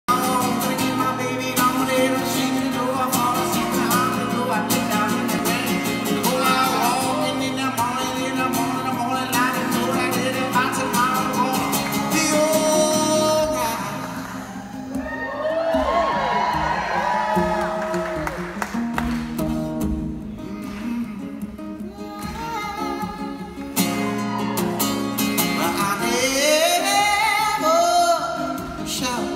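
Male voice singing a song over a strummed acoustic guitar. For about ten seconds in the middle the strumming thins out and the playing gets softer, leaving the voice more exposed; full strumming returns near the end.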